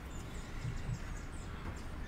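Quiet background noise: a steady low hum with a faint even hiss and a few soft faint sounds, no clear event.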